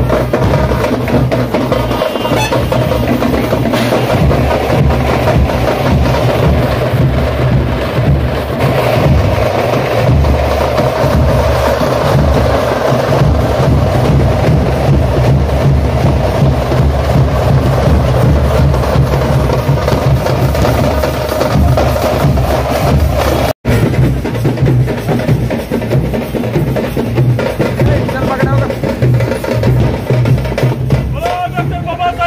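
Loud, dense music with heavy drumming and percussion and a strong steady bass, broken by a split-second dropout about three-quarters of the way through.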